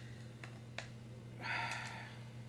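Two faint clicks from fingers working at a sealed plastic eyeshadow palette, then a short breathy exhale about a second and a half in, over a low steady hum.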